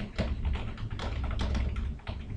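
Typing on a computer keyboard: a quick, even run of keystrokes, about ten a second.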